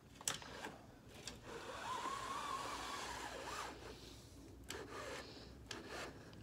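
Window blinds being closed: a few clicks, then a rasping rub of slats and cord for about two seconds with a faint squeak, and another short rub near the end.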